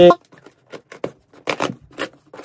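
A cardboard shoe box being handled and opened by hand: a series of brief scuffs and taps of cardboard, the loudest cluster about one and a half seconds in.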